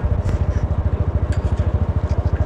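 Motorcycle engine running steadily, a rapid even pulse of about twenty beats a second, heard close up from on the moving bike.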